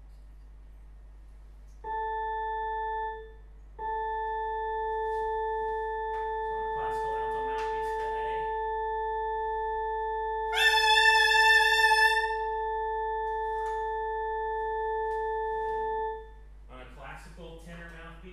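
A pure, steady reference tone held for about twelve seconds, after a short first sounding, as a pitch for mouthpiece practice. About eleven seconds in, a saxophone mouthpiece played on its own scoops up into a louder, buzzy pitch an octave above the tone and holds it for about a second and a half.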